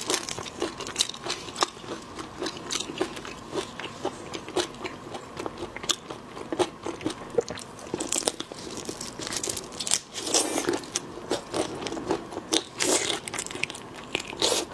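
Close-up eating sounds of soy-sauce-marinated raw shrimp: many small sharp cracks and snaps as the shell is pulled apart between gloved fingers, then biting and wet crunchy chewing, with louder, denser bursts from about eight seconds in.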